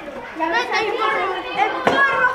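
Several children's voices talking and calling over one another, with no clear words, and a single knock just before the end.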